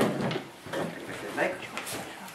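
Sheets of paper rustling as a sheaf of printed notes is leafed through, with a sharper paper flick near the end.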